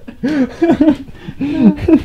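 A man laughing: a string of short chuckles with rising and falling pitch.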